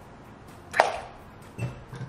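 A sharp knock just under a second in, followed by two duller thuds: a cup and a glass jar being handled and set down on a kitchen counter.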